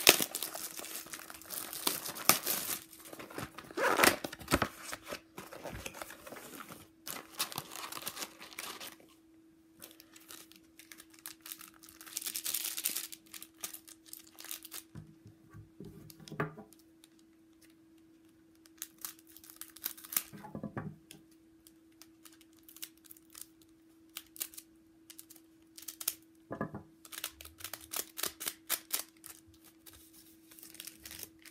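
A cardboard box of trading-card packs being torn open, with paper and wrappers crinkling, over the first several seconds, and another burst of tearing or crinkling a few seconds later. Then quieter handling as the packs are cut open with scissors, ending with a quick run of small clicks.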